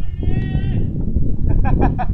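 A high, drawn-out shouted call of about half a second, with a few short voice fragments near the end, over a steady low rumble of wind on the microphone.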